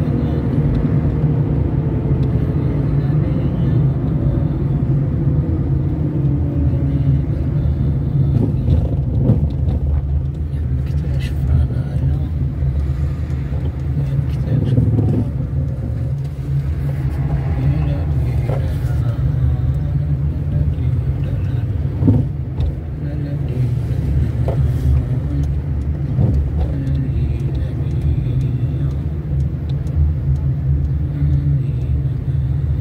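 A car driving in town, heard from inside: a steady low engine and road rumble, with the engine note falling in pitch over the first several seconds as the car slows.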